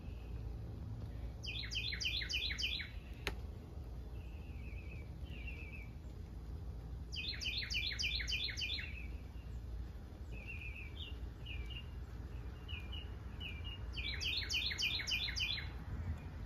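A songbird singing: three short phrases of about six quick repeated notes, spaced several seconds apart, with softer single chirps in between. A single sharp click comes about three seconds in, over a steady low rumble.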